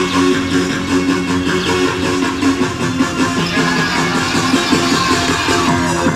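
Backing music for a competitive aerobics routine, playing continuously.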